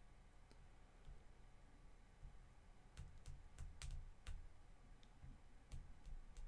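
Near silence broken by sharp clicks from computer input: about six in quick succession around the middle, then a few more near the end.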